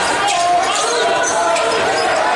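Live basketball game sound: a basketball being dribbled on the hardwood court, mixed with the calls and chatter of players, bench and spectators.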